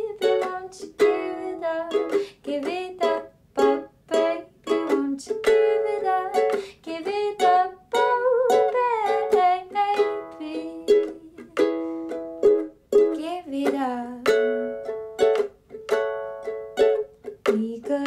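Ukulele strummed in a steady rhythm, with a woman's wordless singing gliding over it.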